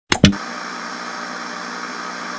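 Two sharp clicks in quick succession, then a steady hiss of TV-style static noise.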